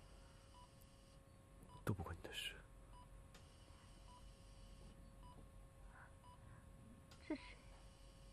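Hospital patient monitor beeping softly at a regular pace over a faint steady hum. A brief louder sound, like a breath or short murmur, comes about two seconds in and another near the end.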